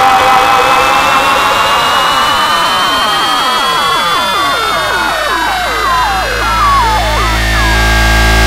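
Frenchcore electronic music in a section without vocals. A dense synth texture is full of falling pitch sweeps that come faster and faster, over a slowly rising high tone, while a deep bass drone swells toward the end.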